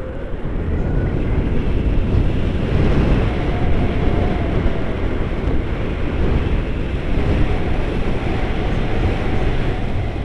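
Wind buffeting the camera's microphone during a tandem paraglider flight: a steady, loud rumble of rushing air.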